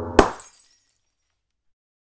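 Glass-smash sound effect: one sharp crash of breaking glass about a fifth of a second in, with a brief tinkling tail that dies away within half a second. The crash cuts off a low droning music bed.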